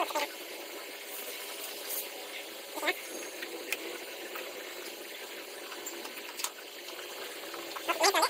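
Steady background hiss with a few faint, sharp clicks as small wires and terminal connectors on a circuit board are handled.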